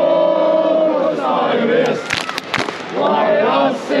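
Football supporters in a stadium stand chanting together in long, held, sung phrases, with three sharp hand claps about halfway through.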